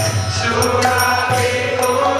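Group devotional chanting of a Bengali Vaishnava bhajan, led by a man's voice, with a drum beaten with a stick and ringing metallic percussion in a steady rhythm.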